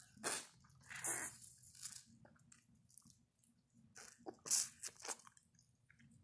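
A few short, separate bursts of biting and slurping at a juice-filled bundle of plastic wrap held to the lips, with the plastic crinkling.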